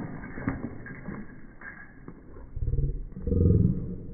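Belgian Malinois growling twice as it bites at a water spray: a short growl about two and a half seconds in, then a longer, louder one.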